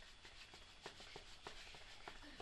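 Near silence, with faint, irregular soft taps and rubbing that grow a little more frequent in the second second.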